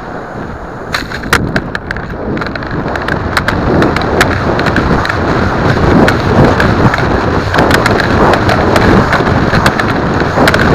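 Airflow rushing over the microphone of a model rocket's onboard camera as the rocket falls back to earth, growing louder as it goes, with frequent sharp rattling clicks from about a second in.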